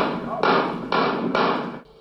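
Gunshots at an outdoor shooting range, several in quick succession about half a second apart, each followed by a noisy tail, heard through a compressed, distorted phone-style recording.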